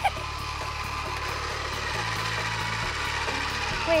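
Small battery-powered motor of a toy pottery wheel running steadily with an even whir and a faint constant whine, starting as the wheel is switched on.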